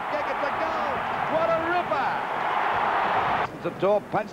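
Football stadium crowd cheering a goal, many voices together in one dense wash of sound that cuts off abruptly about three and a half seconds in.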